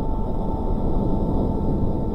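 Intro music sting: a deep rumbling swell with a single steady high tone held over it.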